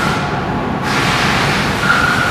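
Steady machine-shop background noise, a broad mechanical din from running machinery, with a faint high whine that comes in briefly at the start and again near the end.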